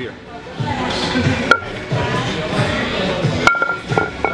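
Iron weight plates clinking together as they are stacked, with two sharp metallic rings, one about a second and a half in and a louder one near the end, over background music.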